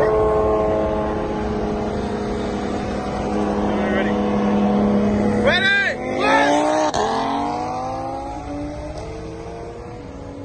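Car engines running side by side at a steady pitch during a highway roll race. About five and a half seconds in a voice calls out briefly, then the engines climb in pitch as the cars accelerate hard.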